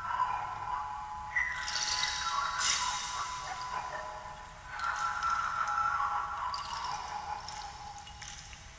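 Improvised music played on tabletop objects: sustained ringing tones that shift in pitch, with new tones struck in about a second and a half in and again near the five-second mark. A hissing swish sounds over it from about two to three seconds in, and the ringing fades toward the end.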